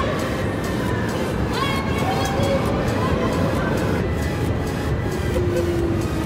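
Amusement-park din: music and voices over a steady low rumble, with no single sound standing out.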